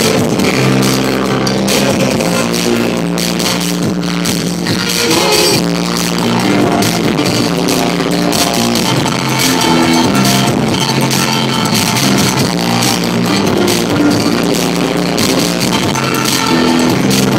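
Live band playing loudly: electric guitars and drum kit over held, steady keyboard or bass notes.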